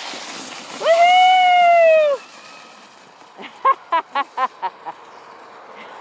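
A person's long, loud, held cheer about a second in, rising at the start and falling away at the end, followed by a short burst of laughter. Under it is a steady hiss of a sled sliding away over snow.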